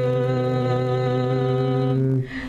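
A man singing a single long note held at a steady pitch, unaccompanied.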